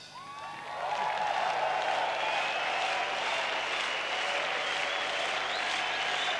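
Concert audience applauding, swelling up within the first second as the music ends and then holding steady.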